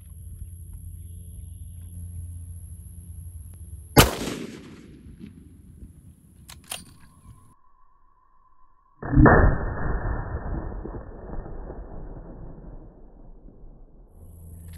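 A single 6.8 Western rifle shot about four seconds in, a sharp crack with a short echo, followed by two faint clicks. After a brief hush comes a deep, muffled boom that dies away slowly over several seconds: the same shot slowed down for a slow-motion replay of the bullet striking the paper reams.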